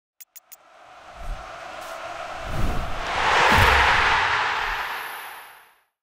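Logo sting sound effect: three quick ticks, then a whoosh that swells with a couple of low thuds to a peak about three and a half seconds in and fades out near the end.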